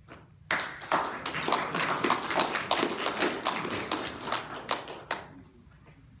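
Audience applauding, starting about half a second in and dying away just after five seconds.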